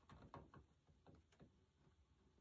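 Near silence: room tone with a few faint light ticks in the first second and a half, from hands pressing a glued wooden end block into place.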